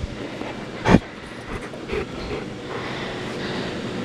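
A hand rubbing and patting a dog's back fur: a steady rustling, scratching noise, with one sharp thump about a second in.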